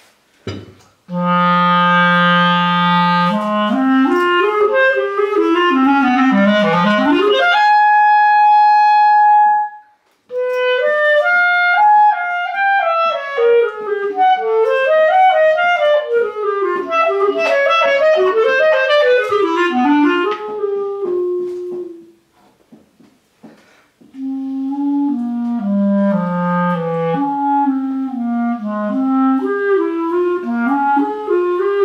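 Solo clarinet playing a melody: a long low note near the start, then phrases climbing and falling, a held high note about eight seconds in, and quick running passages. The playing stops briefly about two-thirds of the way through, then carries on.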